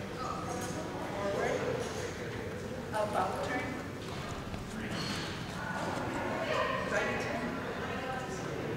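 A voice calling short words, one to two seconds apart, in a large echoing hall: the obedience judge's heeling commands. Light footsteps can be heard under them.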